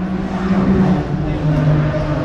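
A racing car engine running, its note steady and then dropping in pitch near the end, with people talking around it.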